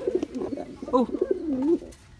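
Domestic pigeon cooing: low notes that rise and fall in pitch, stopping shortly before the end.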